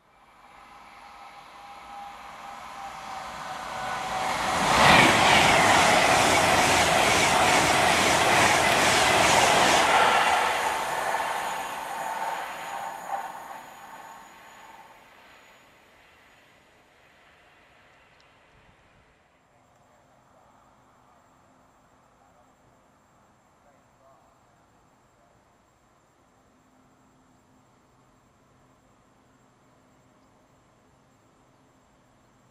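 A Pendolino electric express passing through at speed, with rushing wheel noise. It builds over about five seconds, runs loud with rapid wheel clatter for about five more, then fades away over the next five.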